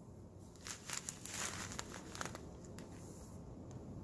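Clear plastic bag of diamond painting drills crinkling as it is handled and turned over. A run of crinkles starts about half a second in and lasts around a second and a half, followed by a few single crackles.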